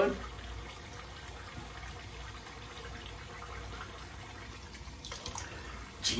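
Bathroom tap running steadily into a sink, faint and even, for rinsing a shaved face.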